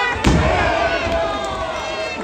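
A wrestler's body landing hard on the ring mat about a quarter second in: one loud slam with a deep boom. Crowd shouting and cheering follow, with one long drawn-out yell.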